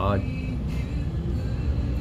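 A low, steady background rumble with no clear events in it, heard in a pause of a man's speech; the last syllable of a spoken word ends just at the start.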